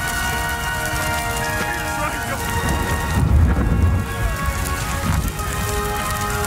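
Film soundtrack of rain falling, with a louder low rumble of thunder about three seconds in, over sustained background music.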